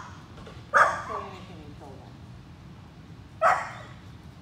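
A small Pomeranian barking: two short, sharp yaps, one about a second in and one near the end.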